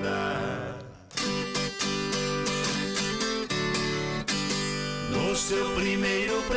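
Viola caipira and guitar playing an instrumental interlude of a sertanejo song. A held sung note fades out in the first second, then about a second in the strings come in sharply with a busy plucked and strummed pattern.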